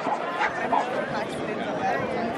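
A dog barking a few times over a background of people chattering.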